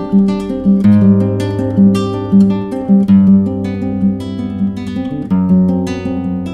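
Solo acoustic guitar playing a rhythmic instrumental passage of plucked chords over bass notes, with no voice.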